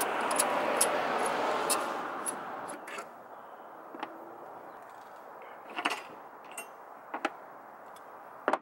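A passing car's noise fades away over the first three seconds. Scattered small clicks and ticks of a screwdriver and screws run throughout, as screws are taken out of a tail light.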